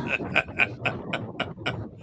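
Fishing reel clicking in a quick, even run of about four clicks a second while a fish pulls against a hard-bent rod.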